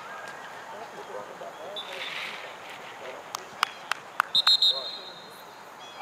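Referee's pea whistle blown in a short, pulsing blast about four and a half seconds in, the loudest sound here, stopping play. A few sharp knocks come just before it, over faint distant shouting from across the field.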